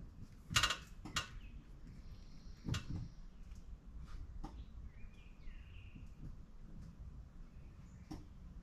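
Knocks and clicks from a car's cabin as its brake pedal is pressed: several sharp knocks in the first three seconds and one more about halfway through. Faint chirps follow near the middle.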